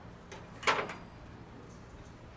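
One short clack about two-thirds of a second in, from handling a refrigerant manifold gauge set and its hoses, over low steady background noise.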